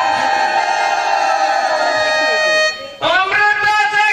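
Stage-play vocal music: a voice holds one long, wavering note over a steady instrumental drone. It fades out just before three seconds in, and a new sung phrase begins at once.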